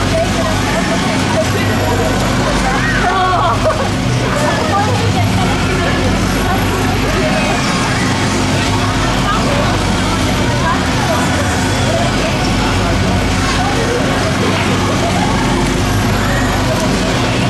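Steady low mechanical hum of a Schwarzkopf Twister fairground ride spinning, under indistinct voices of the crowd and riders.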